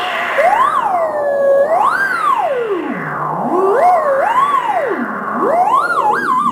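A theremin playing a single wavering tone that glides smoothly up and down in pitch in slow, wide swoops, several rises and falls over a few seconds, with a steady background hiss underneath.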